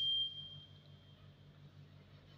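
A single high-pitched electronic ding: one pure tone that starts sharply and fades away over about a second, over a faint low hum.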